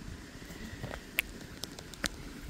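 A few small sharp clicks of handling, one a little over a second in and a quick cluster near the end, over a faint low rumble, as the pond pump is being switched back on.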